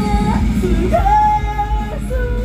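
A woman singing live into a microphone over loud backing music, holding one long note through the second half.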